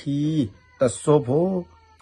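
A man speaking: two short phrases with a brief pause between them.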